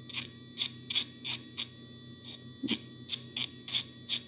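Electric pet nail grinder running with a steady high whine, its metal grinding tip rasping against a dog's toenail in about a dozen short, irregular strokes as the sharp edges are filed smooth.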